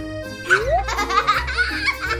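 Background music with a small child giggling over it, starting about half a second in.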